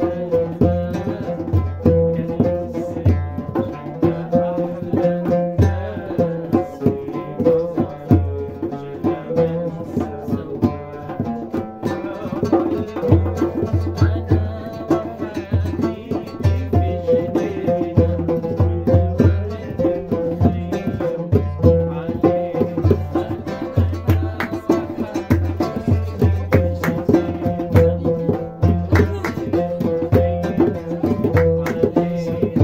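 Oud played in a rapid plucked melody, with a hand drum keeping a steady beat underneath.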